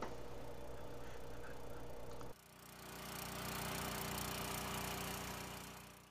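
Small gasoline engine driving the Keene PHP500 pump, running at a steady speed, with water rushing and churning in the tank. The sound cuts out about two seconds in, then fades back in louder with more water noise and fades away again near the end.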